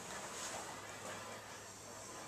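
Quiet workshop room tone with a faint steady low hum; no distinct event stands out.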